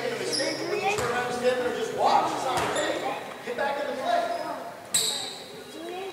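A basketball bouncing on a hardwood gym floor, with a few sharp strikes, while players' and spectators' voices echo around the hall.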